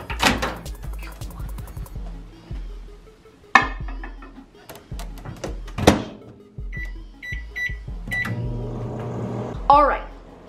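Microwave oven being loaded and started for a seven-minute cook: a sharp clunk as the door is shut, a quick series of keypad beeps, then the oven starts running with a steady hum.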